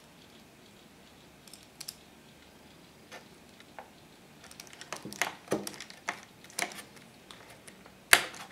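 Hand screwdriver driving the mounting screws into a hard drive's metal bracket: quiet at first, then an irregular run of small clicks and ticks of the bit and screws through the second half.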